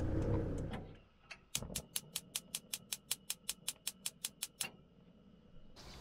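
The van's engine and road noise fade out in the first second. Over dead silence, a run of about eighteen sharp, evenly spaced ticks follows, about six a second, like a fast-ticking clock, then stops.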